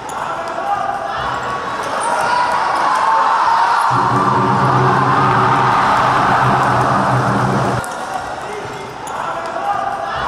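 Crowd noise echoing in an indoor futsal arena, with the ball being kicked on the hard court during play. A steady low drone sounds for about four seconds in the middle.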